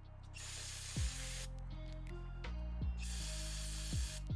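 Aerosol can of brake cleaner sprayed onto small bolts to clear dirt from their threads: a hiss of about a second just after the start, then a second burst near the end.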